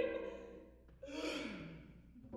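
A performer's breathy sigh about a second in, falling in pitch, after a sung note with vibrato fades out.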